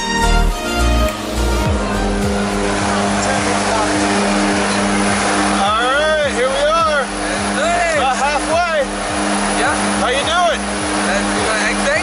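Jump plane's engines droning steadily inside the cabin. Music fades out in the first two seconds, and from about six seconds in, voices call out over the engine noise.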